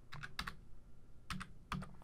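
About five keystrokes on a computer keyboard, typing a short number into a field.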